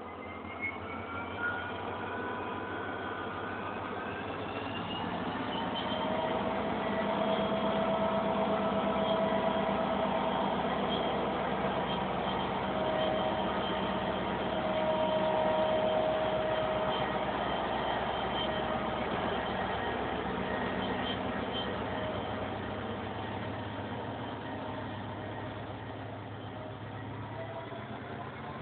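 Diesel locomotive passing slowly at close range, its engine running with a steady tone that grows louder through the middle and then eases off. A lower rumble comes in near the end as the passenger coaches follow.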